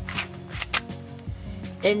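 Layers of a dollar-store 3x3 puzzle cube being turned by hand, a few quick plastic clicks as the faces snap round, over steady background music.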